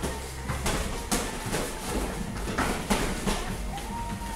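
Light-contact kickboxing exchange: kicks and gloved punches landing and padded feet slapping on foam mats, a string of sharp, irregular slaps and thuds, the loudest about a second in and near three seconds in.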